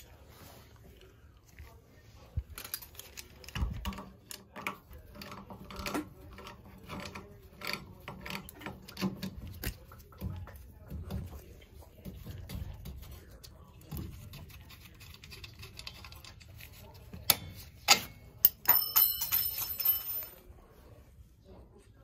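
Metal knocks and clanks of a cast-iron circulator pump and tools being handled as the unbolted pump is worked off its flanges, with a bright ringing clink near the end.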